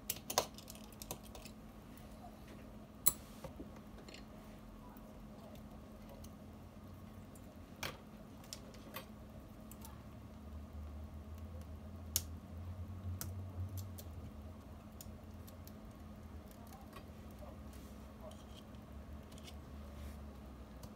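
Scattered small clicks and taps of a precision screwdriver and small parts being handled during the disassembly of an iPhone 7 Plus, a few sharp ticks several seconds apart, over a steady low hum.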